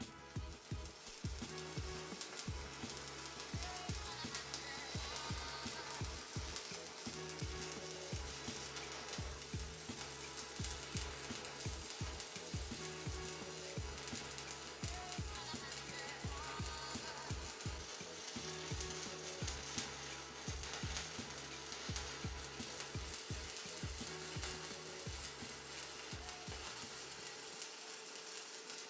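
Stick welding arc with a 7018 electrode, crackling and sizzling steadily as a bead is run overhead.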